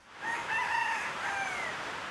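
A rooster crowing once: a long crow of several drawn-out notes that slides down at the end, over a steady outdoor hiss.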